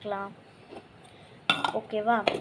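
A white plastic spoon knocking and clattering against a small clear plastic cup about one and a half seconds in.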